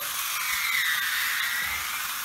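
Battery-powered toy bullet train running on plastic track: a steady whirring of its small electric motor and wheels, with a whine that dips in pitch and rises again about halfway through.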